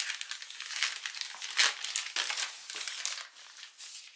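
Plastic mailing bag crinkling as it is cut open with scissors and handled: a dense run of short crackles, loudest a little over a second and a half in.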